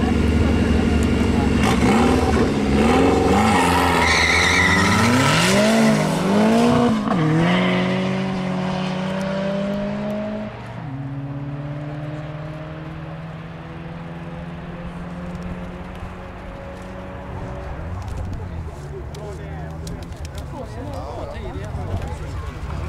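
Two cars launching side by side in a drag race, their engines revving hard with the pitch climbing and falling back at each gear change. After about ten seconds the engines are heard farther off, running at a steadier, lower pitch.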